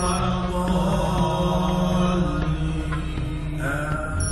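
Large congregation of men chanting dhikr together in long, held tones.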